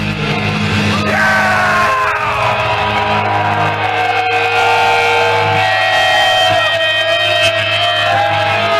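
Death metal band playing live at full volume: distorted electric guitars, bass and drums, with long held high notes that slide down in pitch about a second in and then hold steady.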